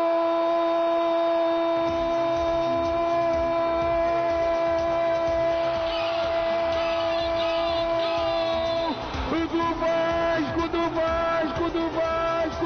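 Brazilian radio play-by-play announcer's long drawn-out goal scream ("gooool"), held on one steady high note for about nine seconds. It then breaks into shorter shouted, chant-like phrases, with a low beat of background music underneath.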